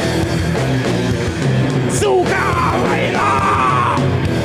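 Heavy rock band playing loud and live on distorted electric guitars and drums, with a shouted vocal about halfway through and again near the end.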